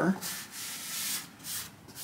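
Kimberly-Clark WypAll X80 paper shop towel rubbed across the bare, unfinished wood top of an archtop guitar body, a soft papery scuffing in strokes. It is a test wipe to find where the towel's fibres snag on raised grain.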